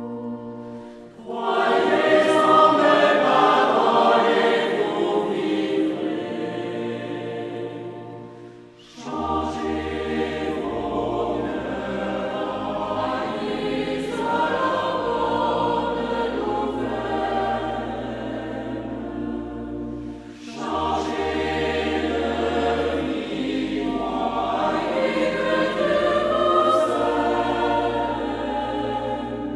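A choir singing a French church song in harmony, in long phrases with brief dips between them, over steady held low notes. New phrases begin about a second in, near the middle and about two-thirds through.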